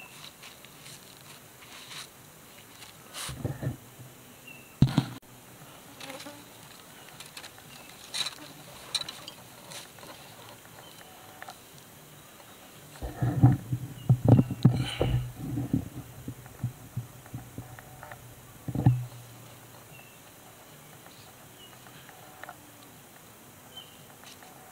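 A flying insect buzzing close by, coming and going, with its longest and loudest pass lasting several seconds past the middle. A few short sharp clicks are scattered through.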